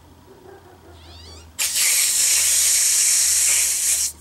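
A latex party balloon being blown up by mouth: after a short squeak, a loud, steady, hissing breath is pushed into it from about one and a half seconds in, stopping at the very end.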